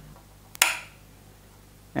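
A single sharp click of a plastic two-way (SPDT) wall switch being flipped, about half a second in, moving the light from one bulb to the next in a staircase-style switching circuit.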